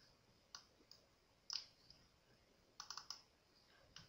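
Faint computer mouse clicks over near silence: single clicks about half a second, one second and a second and a half in, then a quick run of about four clicks around three seconds in, as a file is picked in an upload dialog.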